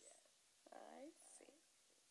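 Near silence, broken about halfway through by a woman's faint voice speaking softly, close to a whisper, for under a second.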